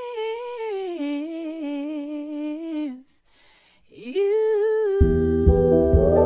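A high voice singing long held notes unaccompanied: the first note steps down about a second in and stops about three seconds in; a second note begins near four seconds, and instrumental music with a low beat comes in under it about five seconds in.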